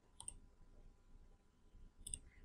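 Near silence, with a single faint computer mouse click about a quarter of a second in.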